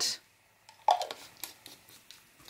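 A few faint knocks and clicks as plastic glue bottles are handled and set down on a tabletop, the first knock just under a second in.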